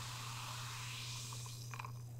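Seltzer fizzing over ice in a glass: a soft, steady hiss of bursting bubbles that slowly fades, with a few faint ticks near the end.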